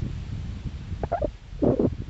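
Wind buffeting the phone's microphone in a low, uneven rumble, with two short sounds about a second in and near the end.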